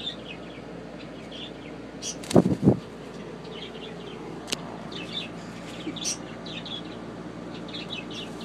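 Short, high bird chirps repeated again and again, with a sharp click about halfway through.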